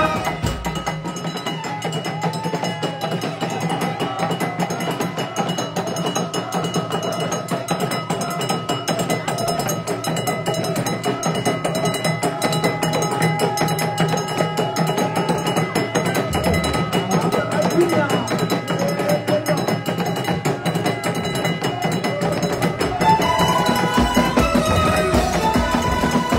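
Traditional Moroccan wedding percussion: many small hand drums, including clay taarija goblet drums, beaten in a fast dense rhythm, with voices mixed in.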